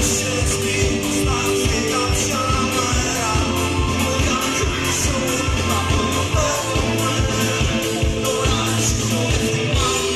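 Rock band playing live, with a man singing lead over drums and keyboards.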